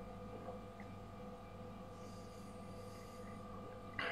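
Faint room tone: a steady low hum with a few constant tones and no distinct events.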